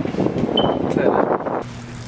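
Rustling, buffeting noise on a handheld camera's microphone as it is carried along, which cuts off suddenly near the end, leaving a low steady hum.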